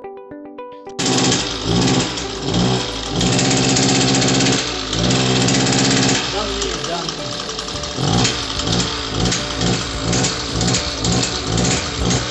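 Small two-stroke engine of a Cub Cadet CC 735/745 brush cutter running loud, first held high from about a second in, then pulsing on and off the throttle about two to three times a second. It is being shown as underpowered, unable to take load at full throttle, a fault put down to a carbon-choked spark arrestor.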